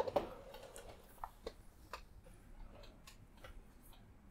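Faint, irregular clicks and light taps of small objects being handled, about eight in all, the sharpest just after the start.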